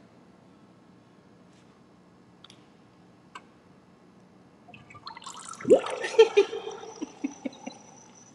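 A ceramic kinetic sculpture of a brain in a liquid-filled bowl gives a wet gurgling burble about five seconds in: one strong glug followed by several smaller glugs over about two seconds.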